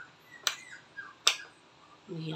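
A metal spoon clicking twice against the side of a bowl while stirring dog kibble and shredded beef, with faint rustling of the food between the clicks.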